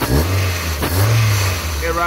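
Toyota 4E-FE four-cylinder engine blipped twice, about a second apart, each rev rising in pitch and settling back. The revs are given while fuel pressure is read off a gauge on a newly fitted adjustable fuel pressure regulator.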